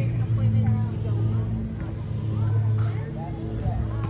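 Faint voices of several people talking, over a steady low motor hum.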